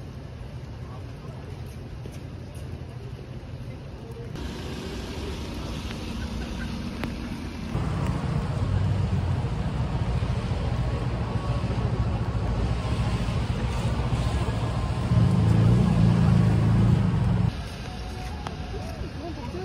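Outdoor street ambience: road traffic running by on a city street, a steady low rumble. It comes in several short clips that change abruptly, loudest near the end.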